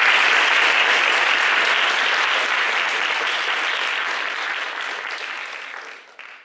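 A roomful of people applauding steadily, the clapping slowly fading away toward the end.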